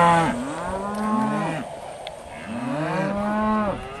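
A calf bawling while it is restrained in a calf cradle for castration. Two long calls, each rising then falling in pitch, follow the tail end of an earlier one.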